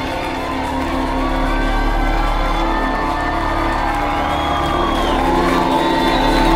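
Electric violin played live over a sustained low drone, its notes gliding up and down, with some audience cheering.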